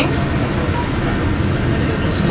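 Steady low engine and road rumble inside a moving tour bus.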